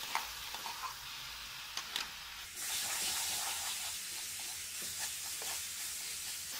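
Mashed banana sizzling in hot ghee and roasted semolina in a frying pan as it is stirred in with a wooden spatula, with a few light scrapes of the spatula. The sizzle grows louder about two and a half seconds in.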